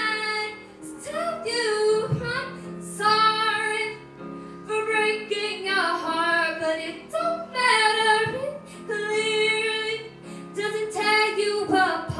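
A girl singing a solo into a handheld microphone, in sung phrases separated by short breaths, over a steady instrumental accompaniment.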